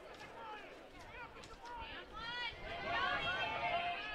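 Several distant voices shouting and calling out at once across an open field: lacrosse players and onlookers during play.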